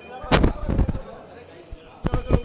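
A loud thump about a third of a second in, then a couple of softer knocks, over a faint murmur of voices.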